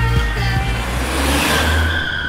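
An SUV approaching and driving past, its engine and tyre noise swelling over about a second, with a steady high tone joining near the end; background music fades out early on.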